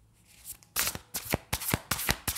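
A tarot deck shuffled by hand, overhand style. After a short pause, a quick irregular run of card-on-card slaps starts just before the one-second mark.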